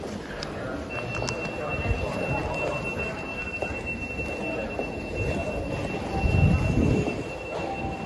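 Underground station ticket-hall ambience: footsteps, background voices and a low rumble, with a thin, steady high-pitched tone starting about a second in and running on. The low rumble swells loudest about six to seven seconds in.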